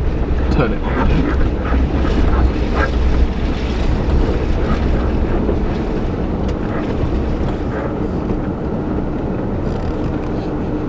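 Suzuki Jimny running at low speed over a rutted, muddy track, heard from inside the cabin as a steady low rumble. There are a few knocks and rattles in the first few seconds, and the sound eases a little after about four seconds as the car slows towards the gate.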